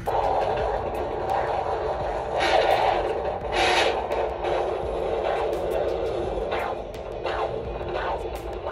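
Handheld fetal Doppler monitor hissing and scraping through its speaker as the probe slides over the pregnant belly, searching for the baby's heartbeat. Two louder swishes come in the first half.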